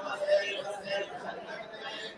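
Chatter of several men's voices talking over one another in a crowd.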